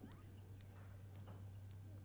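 Near silence: a steady low electrical hum with a few faint bird chirps.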